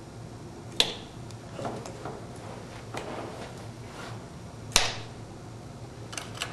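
Two sharp clicks about four seconds apart from the controls of a homemade Bop It–style game being pressed during play, with fainter handling clicks between them over a steady low hum.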